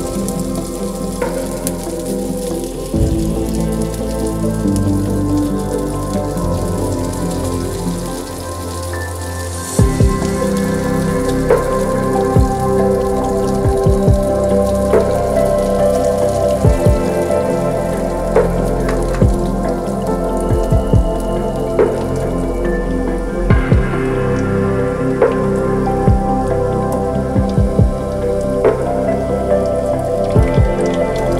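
Oil sizzling in a wok as patties of kofta mixture deep-fry, with sharp crackles and pops that come more often after the first third. Soft background music plays along.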